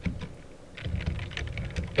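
Computer keyboard typing: a steady run of about nine quick keystrokes as a word is typed.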